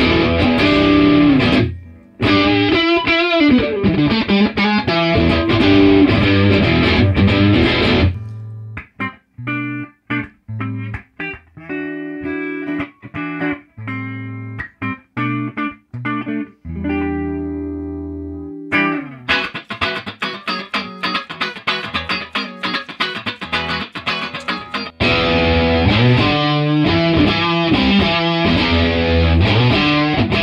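Electric guitar played through an RJ-GX100R guitar amplifier on its high input, its EQ set to match the tone of a Supro amp. Dense, sustained chordal playing gives way about eight seconds in to short, separated picked notes and a held chord. Dense playing returns a little before the end.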